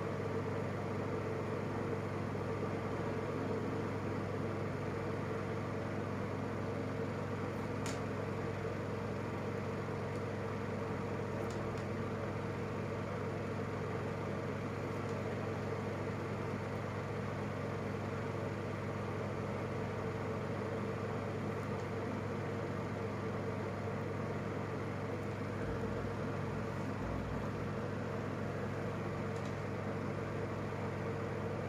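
A steady mechanical hum, like a fan or motor running, unchanging throughout, with a faint click about eight seconds in.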